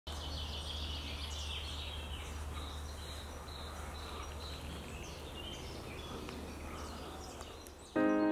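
Faint ambience of birds chirping over a steady low hum, slowly fading.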